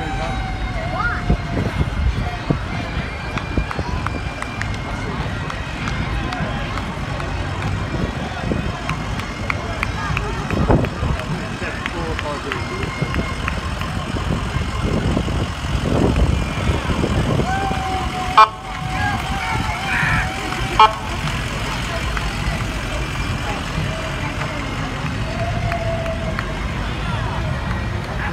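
Ambulances rolling slowly past with engines running, sounding held warning tones from horn or siren several times, with two sharp loud blasts past the middle. Crowd chatter runs underneath.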